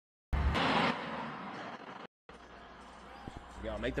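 Livestream audio breaking up while a split-screen call connects: it cuts to dead silence three times, with a short loud rush of noise between the gaps, then a new feed comes in carrying a low steady hum, with a voice starting near the end.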